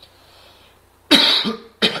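A man coughing: a loud cough about a second in, followed by a shorter second one.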